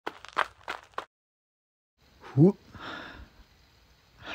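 Several quick, sharp hit sound effects in the first second. About two and a half seconds in comes a short voiced cry that rises then falls in pitch, followed by a brief soft hiss.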